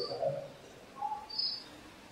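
A few faint, short bird chirps, high single notes heard over quiet room noise.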